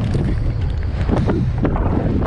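Wind rushing over the microphone of a camera on a moving mountain bike, with steady low tyre rumble and scattered knocks and rattles as the bike rolls down a wooden ramp onto a dirt trail.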